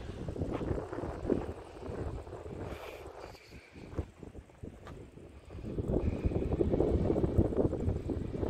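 Wind buffeting the microphone in uneven gusts, easing off midway and picking up again over the last couple of seconds.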